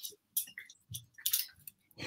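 A few faint, short clicks and knocks, scattered over about two seconds with quiet gaps between them.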